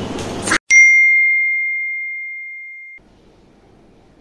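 A single bell-like ding sound effect at a scene cut: one clear high tone with fainter overtones, struck suddenly under a second in, fading steadily for about two seconds and then cut off abruptly. Just before it, the louder sound of the previous shot stops dead.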